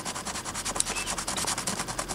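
A coin edge scraping the scratch-off coating from a paper lottery ticket, in quick, even back-and-forth strokes, several a second.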